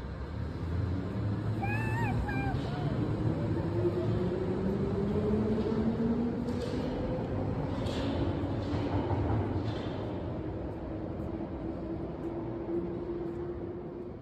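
A London Underground Piccadilly line train pulling out of the platform: a rumble, with a motor whine rising slowly in pitch for several seconds, then holding one steady tone and fading as the train draws away.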